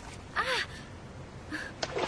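A person's short gasp about half a second in, a brief cry whose pitch rises and falls, over steady surf noise.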